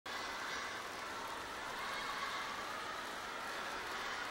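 Concert audience in a large hall: a steady wash of crowd noise, voices and clapping blurred together while the stage is still dark.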